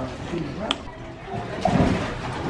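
Indistinct voices talking in the background, with a sharp click less than a second in and a louder, low burst of sound near the end.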